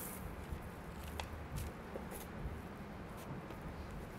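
Low room noise with a few faint clicks and taps from hand work with utensils on a cutting board.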